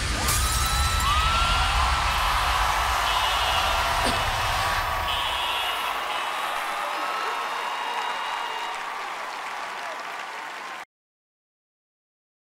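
Large audience cheering and applauding, with high shouts and whistles, as the closing music's bass dies away about five seconds in. The cheering fades and then cuts off suddenly near the end.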